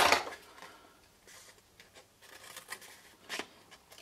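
Mostly quiet, with faint handling of cardstock and a single short scissor snip into the card near the end.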